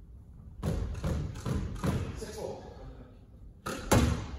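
Squash ball bouncing on a wooden court floor, a string of short thuds about two to three a second, then a louder sharp racket strike just before the end as the serve is hit.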